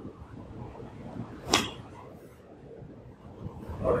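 Faint room tone with one sharp click or knock about one and a half seconds in.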